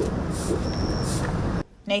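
Broom bristles swishing and scraping over a concrete walkway in sweeping strokes, over a low rumble, with a brief high steady tone midway. The sound cuts off abruptly about a second and a half in.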